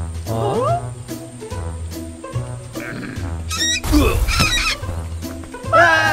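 Cartoon soundtrack music with a steady bass beat, with a short rising squeal about half a second in and a loud, rough creature cry about four seconds in.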